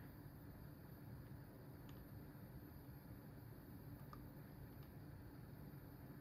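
Near silence: faint room tone with a few tiny ticks.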